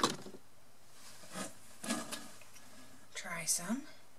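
A few faint clicks and rustles from handling a small lip balm stick as it is uncapped, followed near the end by a short hummed 'mm'.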